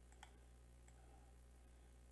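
Near silence with a steady faint hum, broken by two faint computer-mouse clicks, one shortly after the start and one about a second in.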